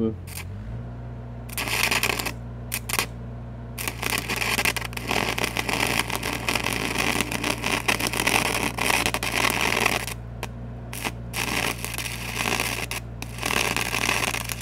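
Stick-welding arc from a 5/32 8010 rod crackling as it tacks slightly magnetized steel pipe, cutting out briefly and restriking a few times. Under it runs the steady drone of the engine-driven SAE 300 welder, whose note rises as the arc strikes.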